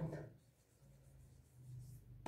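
Faint soft rubbing of fingertips spreading pressed face powder over the skin of the face.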